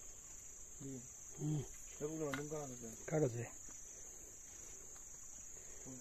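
Steady high-pitched drone of insects in the undergrowth, with a man's voice heard in a few short murmured phrases from about one to three and a half seconds in.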